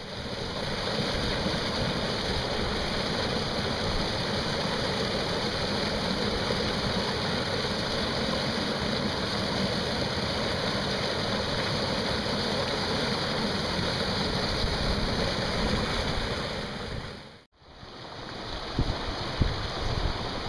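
Mountain stream water pouring over granite boulders into a pool in a small cascade, a steady rush of falling water. About 17 seconds in it cuts off for a moment, then a similar rush of water comes back, uneven, with short bumps.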